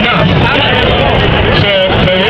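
Several voices talking loudly over one another, with a steady low background noise underneath.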